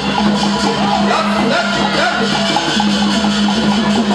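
Traditional Burmese fight music of the kind played at Lethwei bouts: a wavering reed-pipe melody with bending notes over a steady low drone, driven by an even beat of drums and clappers.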